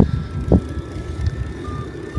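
Low, steady wind and road rumble picked up by a handheld camera while riding a bicycle, with two soft knocks in the first half second and a faint short beep near the end.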